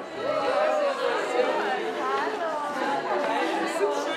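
Several people talking at once: indistinct, overlapping chatter of a small group.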